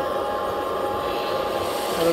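Scale RC excavator's electric motors and gearing running with a steady whine as the arm and bucket move.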